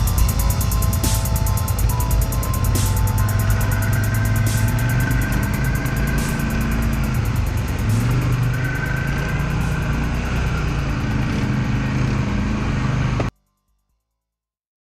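Polaris Sportsman 1000 ATV's twin-cylinder engine running, with background music over it. Both stop abruptly about a second before the end.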